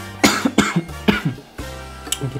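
A man coughing, three short harsh coughs in quick succession in the first second or so: the cough of someone who is ill. Background music plays underneath.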